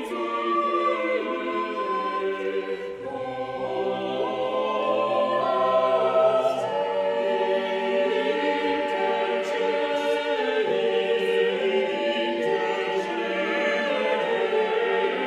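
A choir singing long held notes in several parts at once, the chords changing about every second.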